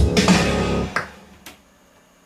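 A simple programmed drum beat with kick drum and bass notes playing back from the studio setup, stopped about a second in. A single sharp click follows.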